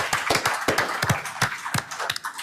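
Applause from a small audience: many separate hand claps, gradually thinning out toward the end.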